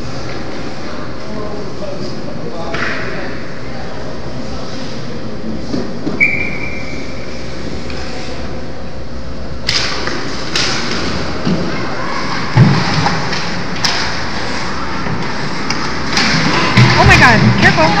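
Ice hockey game sounds in an indoor rink: steady arena noise and spectator chatter. From about ten seconds in come sharp knocks and thuds of sticks, puck and players against the boards, and spectators' voices rise near the end.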